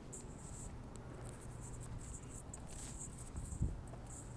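Insects chirping in short, high-pitched bursts that repeat irregularly, over a steady low rumble, with a single thump about three and a half seconds in.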